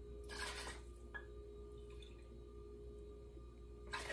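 Bourbon poured from the bottle into a small metal measuring cup: a brief splashing trickle about half a second in and another just at the end, over a faint steady hum.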